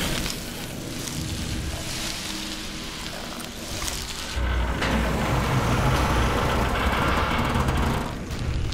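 Horror-film sound effects: a deep, grinding rumble with a hiss on top, which swells sharply about halfway through and stays loud, building towards the door being smashed apart.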